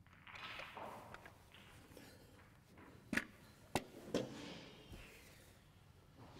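Snooker balls clicking sharply together three times, about half a second apart, as the balls are set up on the table for the next frame. Soft handling and rustling noise sits around the clicks.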